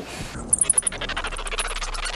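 Bats in a cave colony squeaking: a rapid run of high-pitched chirps, many a second, starting about half a second in.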